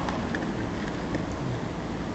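Steady even whooshing of an air conditioner blowing, just back in operation, with a few faint clicks.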